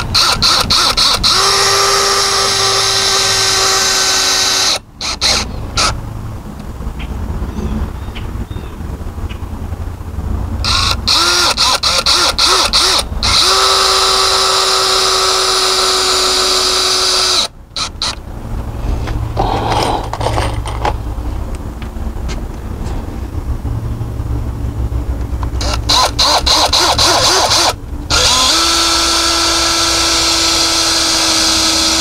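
Cordless drill/driver driving screws down through a composite deck top rail, three times. Each run starts rough and rattly as the screw bites, then settles into a steady motor whine for a few seconds before stopping.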